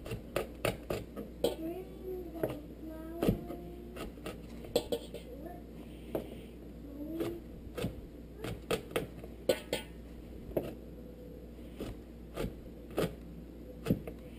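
Chef's knife slicing garlic cloves on a cutting board: short, uneven taps and knocks of the blade on the board, about one or two a second.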